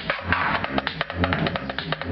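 Minimal techno/house dance music playing loud over a club sound system: dense, crisp clicking percussion over a deep bass note that pulses about once a second.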